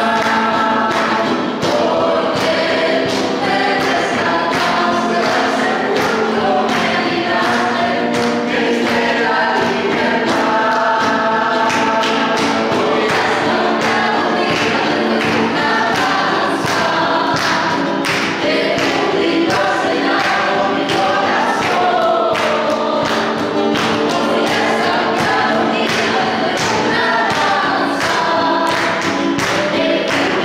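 Worship song sung by a group of voices together over instrumental accompaniment with a steady beat.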